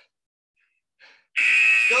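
Workout interval timer's electronic buzzer sounding once, a loud steady beep of about a second that starts suddenly just over halfway through, marking the start of the next work interval. A spoken "go" overlaps its end, and short puffs of breath come before it.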